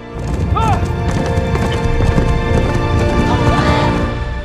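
Film soundtrack of a horse galloping: fast, dense hoofbeats under loud dramatic music, with a short horse whinny about half a second in.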